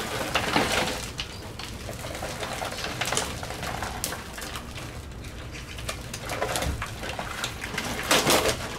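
Dry twigs and packed droppings of a pigeon nest crackling and rustling as gloved hands pull it apart and lift it into a cardboard box. Pigeons are cooing alongside.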